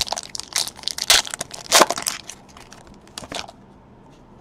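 Plastic wrapper of a trading-card pack being torn open and crumpled by hand. There is a run of loud, rapid crinkling crackles over the first two seconds and another short burst near the end.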